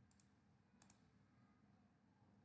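Near silence with faint computer mouse clicks: a quick double click right at the start and another a little under a second in.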